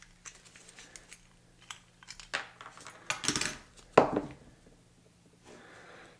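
Small metallic clicks and scrapes as a screwdriver pries the diecast metal body of a Hot Wheels Redline van off its base, with louder scraping about three seconds in and a sharp clack about four seconds in.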